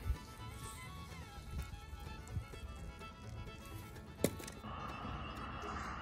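Faint background music running quietly under the scene. A single sharp click comes about four seconds in, and a steady hiss begins soon after.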